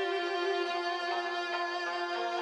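Morin khuur (Mongolian horsehead fiddle) playing a long held bowed note, with a woman singing along in traditional Mongolian style.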